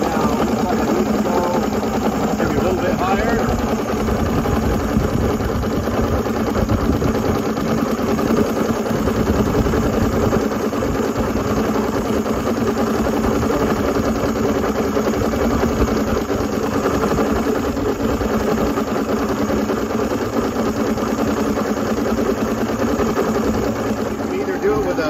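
Mercury Black Max 135 two-stroke V6 outboard idling steadily, warmed up, while its idle timing is being adjusted.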